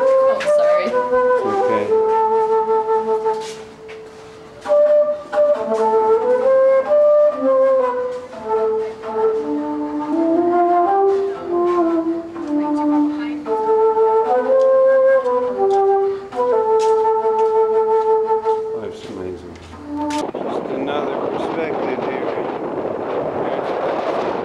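Solo silver concert flute playing a melody of held and moving notes, with a short break about four seconds in. About twenty seconds in, the flute stops and a steady rushing noise takes over.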